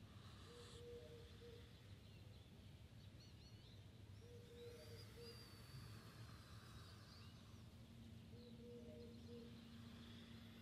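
Near silence with faint distant birdsong: thin high chirps and trills around the middle, and a low steady call of about a second repeated three times, about four seconds apart.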